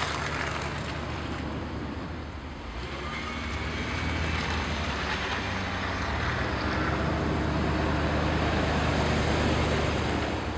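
Low hum of a motor vehicle's engine, growing louder over several seconds toward the end, over a steady rushing noise.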